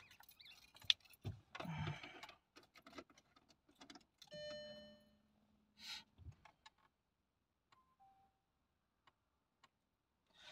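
Faint handling noises inside a car: rustling, clicks and knocks. A short electronic tone sounds about four and a half seconds in, and two brief beeps follow near eight seconds.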